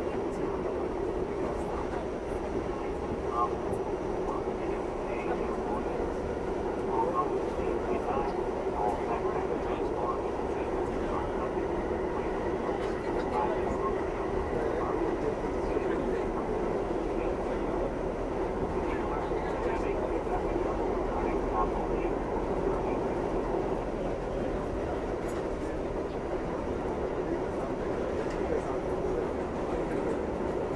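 R68A subway car running at speed through a tunnel, heard from inside the car: a steady rumble of wheels on rail that holds an even level throughout.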